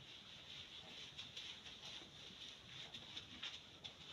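Faint, repeated rubbing strokes of a duster wiping marker writing off a whiteboard.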